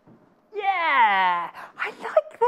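A woman's drawn-out, wordless vocal exclamation, about a second long, that slides steeply down in pitch, followed by a few short speech sounds.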